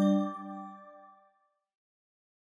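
Final bell-like chime of an intro jingle, one struck note ringing out and fading away over about a second and a half.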